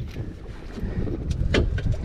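Small fishing boat under way on open sea: a steady low rumble of the boat and its motor, with wind on the microphone and a short knock about one and a half seconds in.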